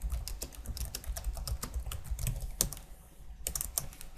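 Computer keyboard being typed on in quick runs of keystrokes, entering a short command at a terminal, over a low steady hum. The typing stops briefly near three seconds, then a few more keystrokes follow.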